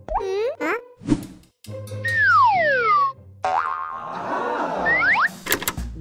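Cartoon sound effects: short boing-like sweeps at the start, a long falling whistle about two seconds in, then a busier warbling effect with a few sharp clicks near the end.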